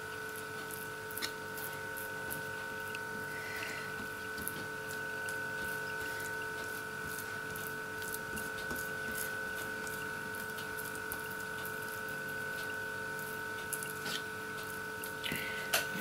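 Faint scrapes and clicks of a metal spoon spreading tomato over pizza dough in a baking tray, under a steady high-pitched electrical whine made of several tones.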